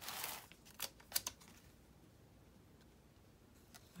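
Paper rustling and a few small clicks at the start as a sticker is handled and pressed onto a planner page.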